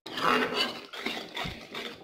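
Metal spoon stirring and scraping frying masala around a metal pan, the tomato-and-oil mixture sizzling, with a few light clinks of spoon on pan.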